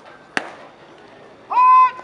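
A pitched baseball smacking into the catcher's mitt with one sharp pop, then about a second later a loud, high, held shouted call lasting under half a second.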